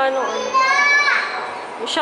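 Indoor voices: brief talk, then a high-pitched voice drawn out for about half a second that rises and falls, near the middle. A short sharp click comes near the end.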